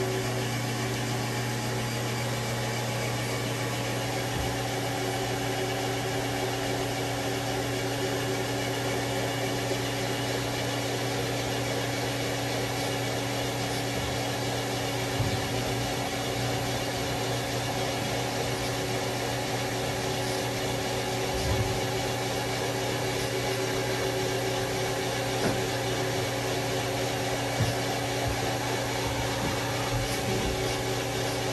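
Steady electrical and mechanical hum of a powered-up Haas SL-30 CNC lathe: a low drone with a few steady higher tones over a hiss, and a few faint knocks along the way.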